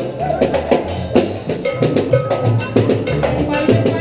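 A small live Mexican band of guitars and a drum playing a dance tune, with a steady beat of sharp percussion hits over a bass line.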